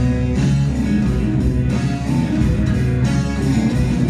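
Live country band playing an instrumental passage with no singing: strummed acoustic guitar over electric bass and a drum kit keeping a steady beat.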